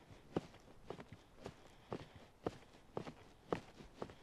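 Footsteps of a person walking through grass, a quiet, even stride of about two steps a second.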